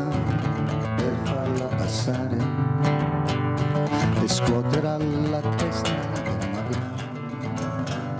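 Acoustic guitar playing a slow instrumental passage between sung lines of a song.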